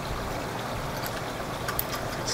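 Steady rushing background noise, with a few faint light clicks about halfway through and again near the end.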